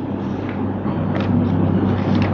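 Steady low hum with a hiss of background noise on a lecture-room recording, no clear speech.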